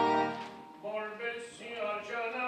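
A children's choir's sustained chord ends about half a second in and dies away in the church's echo. A single voice then begins a slow sung line in short held notes.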